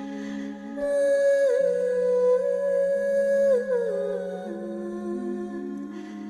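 A voice humming long held notes with small turns in pitch, over lower sustained drone tones that change in steps: meditative vocal toning.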